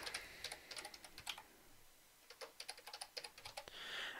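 Faint typing on a computer keyboard: quick runs of key clicks, with a short pause just before the middle.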